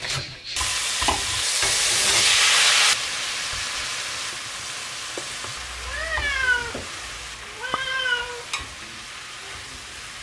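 Sliced green peppers, carrots and onion sizzling as they are stir-fried in a pot, loudest for the first few seconds and then steadier. A cat meows twice, a little over a second apart, about six seconds in.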